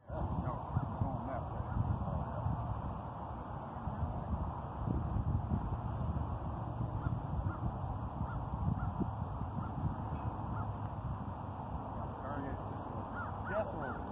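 Open-air ambience: many faint, short bird calls repeating throughout over a low rumble of wind on the microphone.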